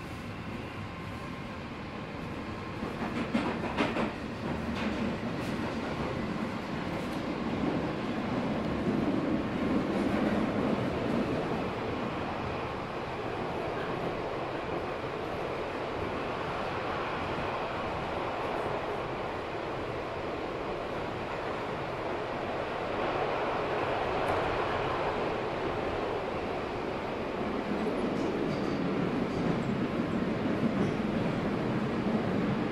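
London Underground Northern Line train (1995 stock) heard from inside the carriage: a rumble of wheels and motors that grows louder a few seconds in as the train gets under way, then runs steadily with some clatter from the wheels.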